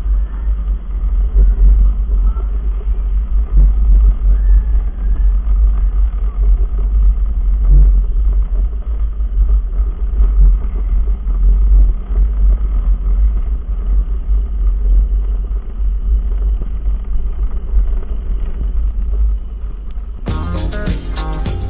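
Gravity luge cart rolling fast down a concrete track, heard from the cart itself as a steady low rumble of its wheels on the concrete that swells and dips.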